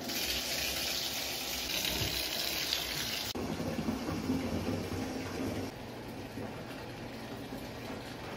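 Bathtub faucet running full, water pouring from the spout into a tub filling with bubble bath as a steady rush. The sound changes abruptly about three seconds in, going duller and deeper, and drops a little in level around six seconds.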